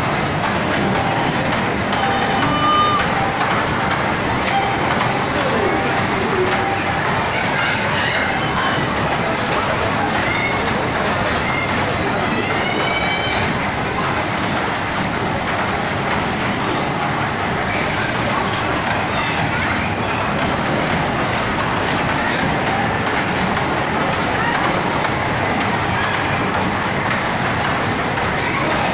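Children's train ride rolling along its track with a steady rumble and rattle, mixed with voices in a busy play hall. A few short high-pitched calls rise above it a couple of seconds in and again around ten to thirteen seconds.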